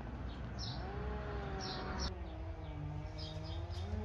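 A few faint, short bird chirps over a low steady hum, with a long, slowly wavering tone in the background from about a second in.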